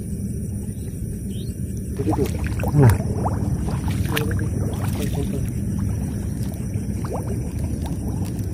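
Water sloshing and splashing irregularly in shallow water as someone moves through it, over a steady low background noise; the splashing is busier from about two seconds in.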